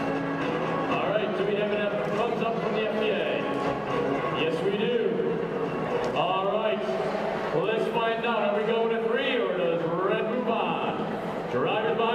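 A man talking, his words unclear, in a big hall full of background crowd noise, with some music underneath near the start.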